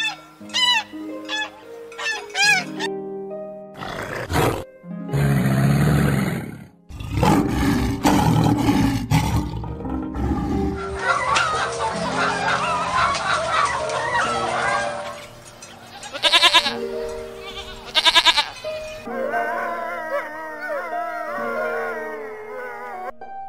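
Canada geese honking in a quick repeated series at the start, over background music. A loud, noisy stretch follows. Then a crowd of caged laying hens clucking and squawking together in a dense chorus, with two sharp calls after it.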